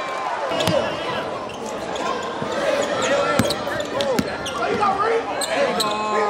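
Live gym sound at a basketball game: voices of players and crowd calling out, with a basketball bouncing on the hardwood floor in several sharp knocks.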